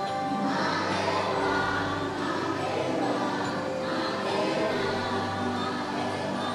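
Choral music: a choir singing long, layered notes that swell and fade over a sustained musical background.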